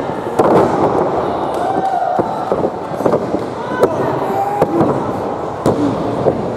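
Small wrestling crowd shouting and yelling over one another, with several sharp smacks scattered through.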